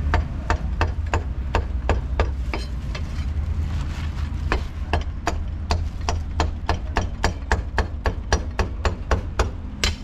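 Cleaver chopping meat on a wooden chopping board: a steady run of sharp chops, about three a second, quickening a little in the second half, over a steady low hum.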